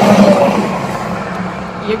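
Car cabin noise while driving at highway speed: a steady low drone of engine and tyres on the road, heard from inside the car.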